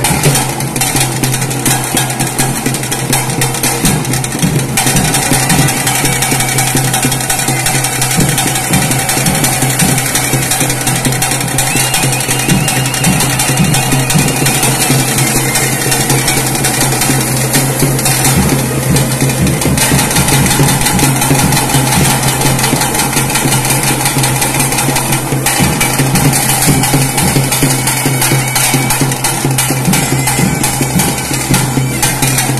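Loud temple festival music: dense, rapid drumming over a steady low drone, running without a break.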